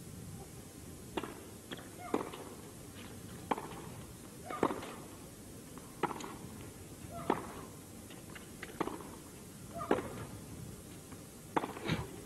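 Tennis rally: sharp racket-on-ball hits traded back and forth, about ten in all, roughly a second apart.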